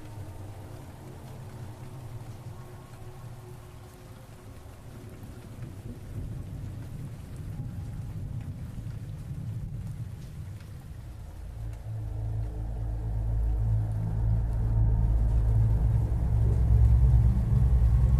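Steady rain with a deep thunder rumble that swells and grows louder from about twelve seconds in.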